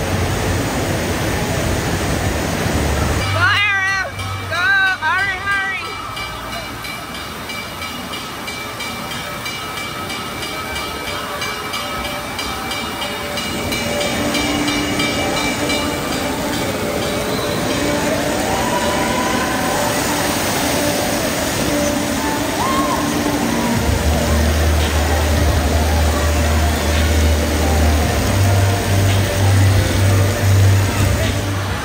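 Busy indoor waterpark din: a constant wash of rushing water and crowd voices under background music with a stepped bass line. A few high rising calls or whistles sound about four seconds in.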